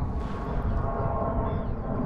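Wind buffeting the microphone over open water, a steady rumble and hiss with a faint steady tone underneath.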